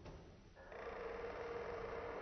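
A faint steady hum that starts about two-thirds of a second in.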